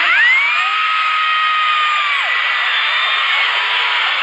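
A large crowd of fans screaming and cheering. One shrill voice stands out: it rises sharply at the start, holds one high note for about two seconds, then drops away.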